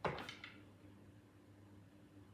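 Quiet room tone with a faint steady low hum, after a brief soft noise right at the start that fades within half a second.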